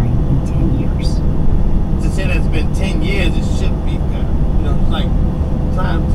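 Steady low drone of a moving truck's engine and road noise in the cab, with a voice from a radio news story speaking over it in short stretches about two seconds in and near the end.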